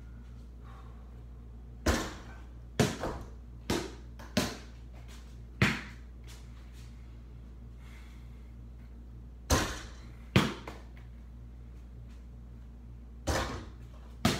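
A ball bouncing and striking hard surfaces indoors: about eight sharp knocks at uneven spacing, some in quick pairs, with a pause of a few seconds midway, over a steady low hum.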